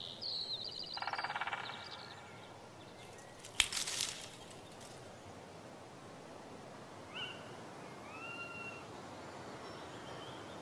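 Birds calling over a faint steady hiss: a chirping, buzzy trill about a second in, then two clear whistled notes near the end. A single sharp click about three and a half seconds in is the loudest sound.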